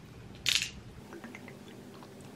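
One short, breathy exhale just after swallowing a sip from a glass bottle, then a few faint small mouth clicks.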